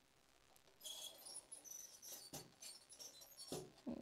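Faint, irregular high-pitched pings and chirps with a couple of soft clicks, starting about a second in: copper pieces with freshly fired vitreous enamel ticking and pinging as they cool.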